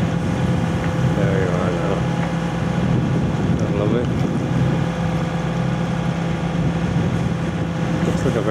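A boat's engine running at a steady low drone while under way.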